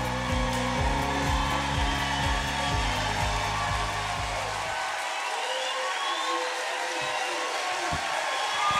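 Walk-on music with a steady beat over an audience applauding and cheering. The music fades out about five seconds in, leaving the applause.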